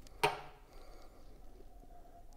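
A short grunt-like vocal sound just after the start, then quiet room tone with a faint steady hum.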